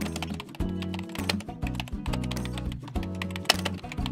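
Background music with sustained low notes, under a rapid run of keyboard-typing clicks: a typing sound effect for on-screen text.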